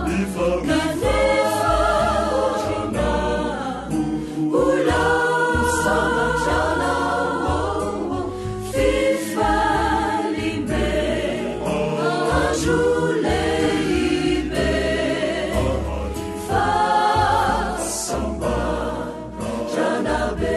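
A choir singing a Christian song with instrumental accompaniment and a bass line under the voices.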